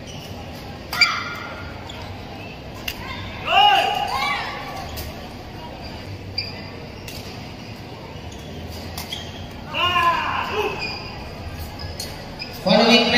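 Badminton being played on an indoor court in a large, echoing hall. Scattered sharp racket-on-shuttlecock hits, the strongest about a second in, and two short bursts of shoe squeaks on the court floor, one near the middle and one near the end, over a steady crowd murmur.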